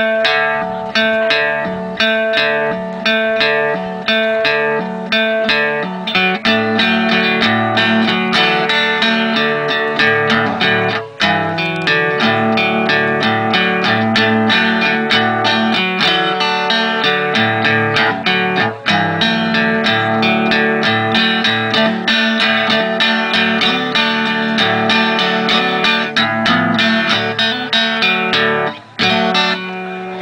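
Solo acoustic archtop guitar playing an instrumental tune, a steady run of picked and strummed notes over ringing held tones. The playing breaks briefly near the end.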